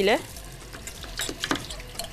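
A few faint taps and scrapes of a kitchen knife cutting through sheets of puff pastry and yufka laid in a metal baking tray. A word ends at the very start.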